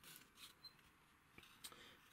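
Near silence: faint room tone with a couple of light clicks in the second half, from a small balsa-wood wall panel being handled against the model.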